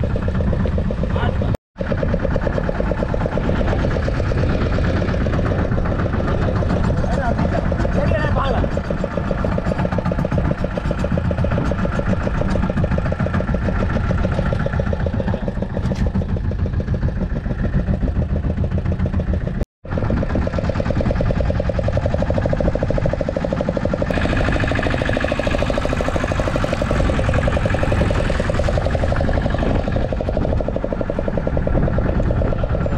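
A fishing boat's engine running steadily with an even pulse. The sound drops out to silence twice, briefly, about 2 s and 20 s in.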